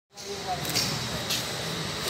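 Background murmur of a gathered group of people, with two short, sharp high clicks about a second apart.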